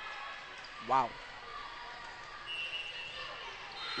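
Faint background sound of a volleyball rally in a gymnasium, with a brief high steady tone about two and a half seconds in.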